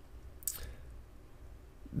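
A pause in a man's speech: a faint low background hum, with one brief soft mouth sound about half a second in.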